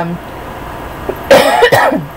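A woman coughing twice in quick succession, about a second and a half in.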